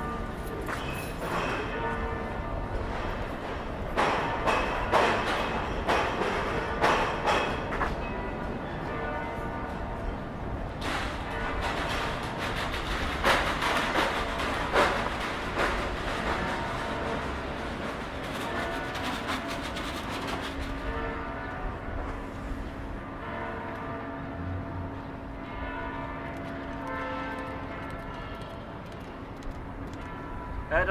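Bells ringing at several pitches over a steady background of outdoor clatter and noise.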